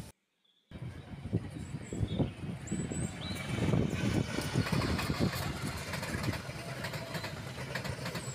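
Passenger train passing close by: a continuous low rumble with irregular clattering of the wheels on the rails. It starts after a half-second gap of silence near the beginning.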